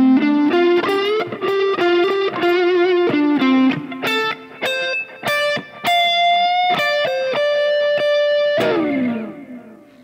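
Overdriven electric guitar on a Fender Stratocaster playing a slow single-note lead lick with string bends and vibrato, then a long held note, ending in a slide down the neck about nine seconds in.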